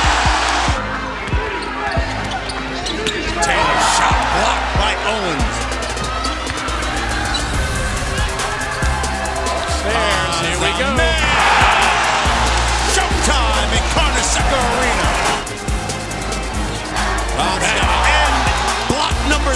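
Basketball bouncing on a hardwood court, with sneakers squeaking and arena crowd noise swelling about eleven seconds in.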